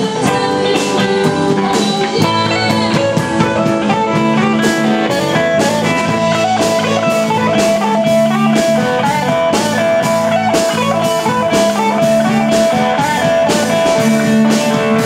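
Live rock band playing, an electric guitar taking the lead over a drum kit, with no singing. About four seconds in, a cymbal starts a steady beat of about two strikes a second.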